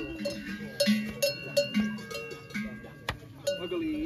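Large cowbells hung on cattle, clanking unevenly about two or three times a second, each strike ringing on. They are big festive bells put on the cows for the transhumance.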